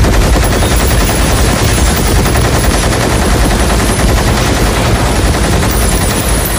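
Movie-trailer sound effect of a huge multi-barrelled machine gun firing without pause: a dense, rapid stream of shots over a deep low boom, loud.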